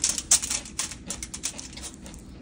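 Crumpled aluminium foil crinkling as fingers pick air-fried tater tots off it: a quick run of irregular crackles and small clicks, strongest in the first half second and thinning out after.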